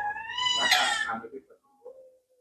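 A cat giving one long meow that rises and falls in pitch and dies away a little over a second in.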